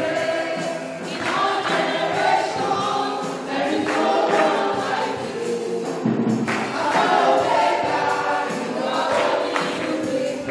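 A church congregation singing a gospel praise song together, led by a woman singing into a microphone.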